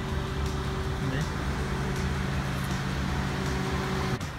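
Honda Pilot SUV's engine running as the vehicle rolls slowly past close by: a steady hum over a low rumble that cuts off suddenly at the very end.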